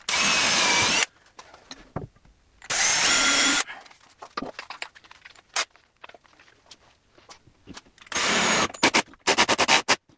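Cordless drill boring pilot holes in timber: three runs of about a second each with a steady motor whine. Near the end come several quick, short trigger bursts.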